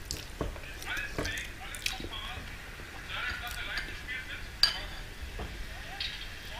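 Metal fork clinking against a glass bowl while spaghetti is being eaten, with a few short, sharp clinks scattered through.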